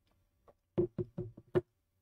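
A quick run of about five sharp knocks, roughly five a second, the last one the loudest.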